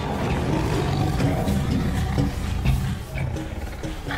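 A tiger growling, a deep rough rumble that runs on steadily, with music underneath.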